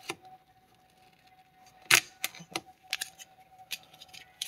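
Plastic clicks and knocks from a hand working a Dodge Magnum's taped-up dashboard air vent, which is held by three of its four tabs. There are a handful of sharp clicks, and the loudest comes about halfway through.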